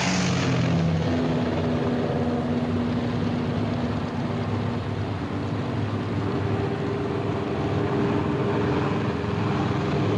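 B-17 Flying Fortress bomber's four radial engines running at power with a steady propeller drone as the bomber rolls along the runway, dipping slightly in loudness about halfway through.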